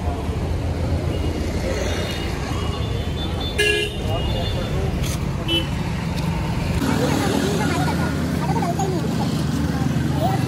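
Busy road traffic running steadily, with a short vehicle horn toot a little past the middle and a smaller one shortly after. People talking close by in the last few seconds.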